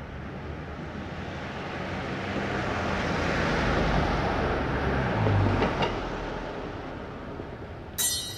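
Ambient recorded noise opening a lo-fi track: a wash of noise that slowly swells to its loudest about five seconds in, then fades. Ringing keyboard-like notes start at the very end.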